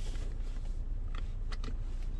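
Steady low hum in the cabin of a 2014 Cadillac SRX with its 3.6-litre V6 idling, with a few faint clicks from a hand on the plastic cup-holder trim about a second in.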